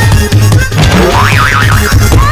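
Background music with a steady low beat, overlaid with a cartoon-style comic boing sound effect: a rising glide, then a pitch that wobbles up and down several times in the second half.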